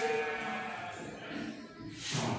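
A drawn-out spoken syllable trails off, leaving faint classroom room noise.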